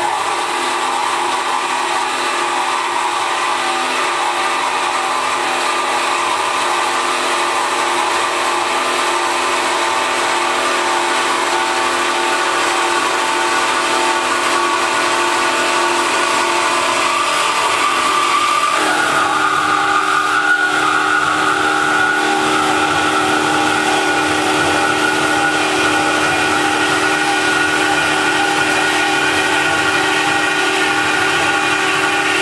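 Alligator HD260LR horizontal metal-cutting bandsaw running, its blade cutting through a 203 mm beam with a steady whine of several tones. About two-thirds of the way through, the tone changes suddenly to a different, higher pitch and then holds steady.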